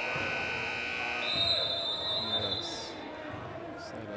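Gym scoreboard buzzer sounding for the end of the quarter, cutting off about a second and a half in. It is overlapped by a high, steady referee's whistle blast of about a second and a half. Voices carry in the hall underneath.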